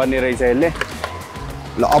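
A man talking over background music; his speech breaks off for about a second in the middle, leaving the music.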